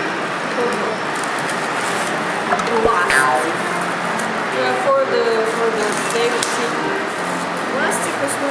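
Voices over restaurant background noise, with paper sleeves and plastic cutlery wrappers being torn open and crinkled, a few short crackles standing out.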